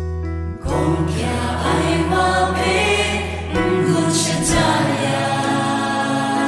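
Kachin gospel worship song: held electric-keyboard chords give way, about half a second in, to full accompaniment with group singing.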